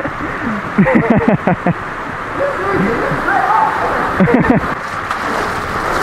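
Men laughing and yelping in bursts over a steady rush of water.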